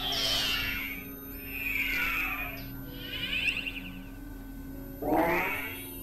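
Experimental synthesizer tones: pitch glides sweep downward in the first half, and one sweeps steeply upward near the end, over a steady low drone.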